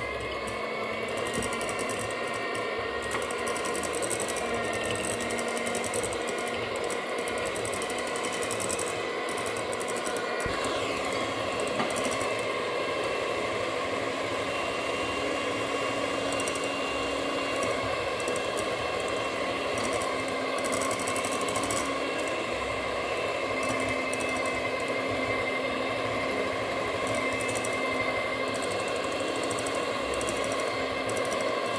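Moulinex electric hand mixer running steadily, its beaters whipping butter in a glass bowl into a condensed-milk buttercream.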